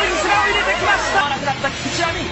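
A babble of several voices talking over one another, with a low rumble underneath that stops a little past halfway.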